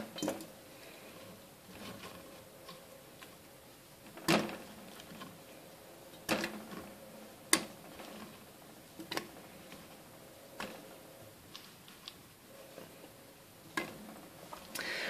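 Pineapple chunks dropped one by one into an empty glass pitcher, giving a series of faint knocks on the glass every second or two.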